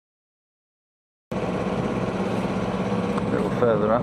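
Silence, then from about a second in the steady drone of a sailing yacht's engine as she motors along; a voice is heard briefly near the end.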